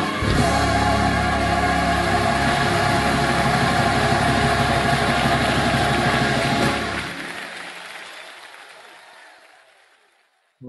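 Recorded gospel worship song with choir singing, fading out from about seven seconds in.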